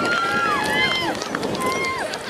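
Several children's voices cheering at once, high held shouts overlapping one another over a background of crowd noise.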